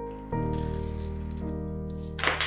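Soft piano background music with sustained chords. About a third of a second in, a scratchy rasp lasting about a second: a craft knife cutting leather along a steel ruler.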